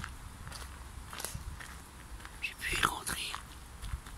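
Footsteps crunching on a fine gravel path at a walking pace, each step a faint short scrape. About three quarters of the way through there is a short, louder breathy hiss, like a whisper or breath near the microphone.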